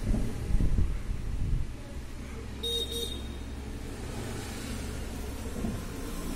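A low rumble, uneven for the first couple of seconds and then settling into a steadier low hum, with a brief pitched blip a little under three seconds in.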